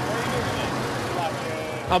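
Steady low hum of a vehicle engine running, with faint voices in the background.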